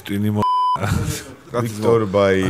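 A short steady electronic censor bleep, about a third of a second long, dubbed over a word in a men's conversation; the voices are cut out completely beneath it.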